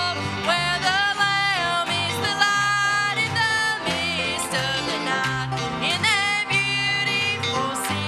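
Live country gospel band music: a fiddle and guitars playing, with long held notes that waver and slide in pitch over a steady beat.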